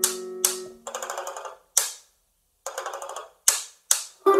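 Banjo played with short muted strokes: a ringing chord dies away in the first half-second, then sharp clicks and brief damped strums, with a short gap in the middle.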